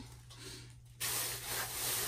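A steady rubbing, rustling noise that starts suddenly about halfway through.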